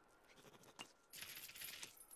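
Quiet cartoon sound effects of a squirrel handling an acorn: a light tap about a second in, then a short scrabbling scrape.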